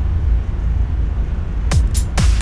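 A steady low hum, then about 1.7 s in a programmed drum beat starts playing back from FL Studio: punchy kick drums with a quick falling pitch among sharp percussive hits.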